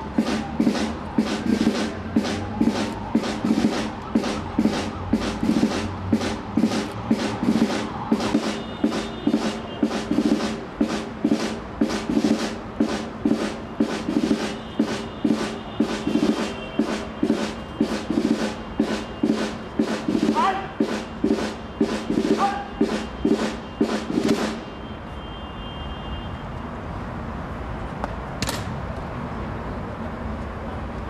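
A military drum beating a steady marching cadence, about two strokes a second. It stops abruptly about 24 seconds in, leaving a steady background noise.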